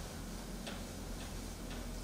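Quiet hall room tone with a few faint light ticks about half a second apart.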